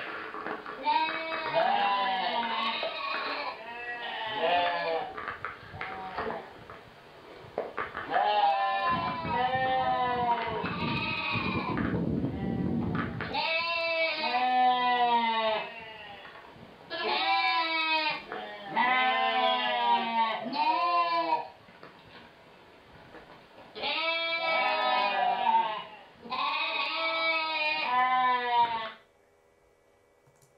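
Sheep bleating, ewes and their weaned lambs calling back and forth to each other after being separated. The calls are repeated and wavering, several overlapping, and come in bursts with short pauses. A low rumble runs under the calls around the middle.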